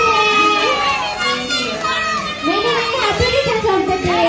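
A crowd of children and adults calling out together, many voices overlapping excitedly, with music in the background.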